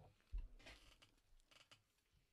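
Faint sounds of biting into and chewing a Cookies N' Creme Rice Krispies Treat: a soft thump about a third of a second in, a short rustle, then a few small clicks.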